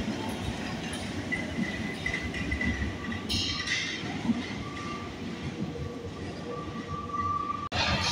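A Paris Métro line 10 MF 67 train pulling out of the station into the tunnel, its rolling rumble and faint held motor whine going on after it has left the platform. A short high hiss comes about three seconds in.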